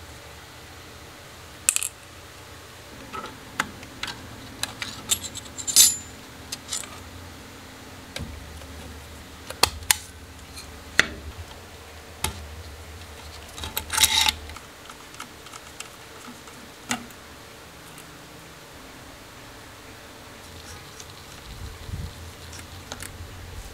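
Small metal clicks, taps and light scrapes of hand tools and loose parts on a Konica L 35mm film camera being taken apart, as its chrome top cover is worked loose. The clicks come singly and irregularly, the loudest about six seconds in, with a short rattling cluster around fourteen seconds.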